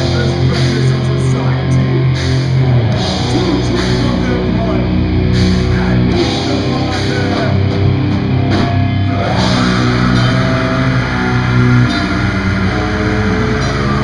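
Heavy metal band playing live: distorted electric guitars and bass over a drum kit, with regular cymbal hits, loud and dense.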